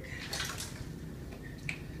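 A towel rustling and scuffing in brief bursts as it is bundled around a striped skunk, with one sharp click near the end, over a steady low background rumble.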